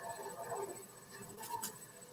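Faint, muffled voices in the background of a video-call line, with two quick clicks near the end.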